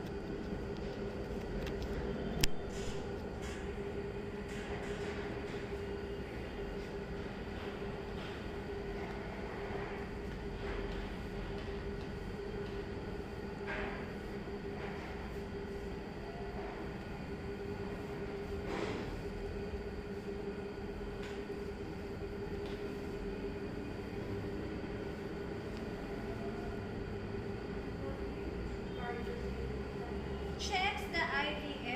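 Steady room hum with a constant tone, like a fan or air-conditioning unit. Over it come a few soft rustles of handling and one sharp click about two and a half seconds in.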